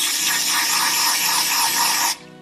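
Aerosol can of L'Oréal Professionnel Tecni.Art Volume Lift spray mousse spraying in one long steady hiss that cuts off suddenly at the end.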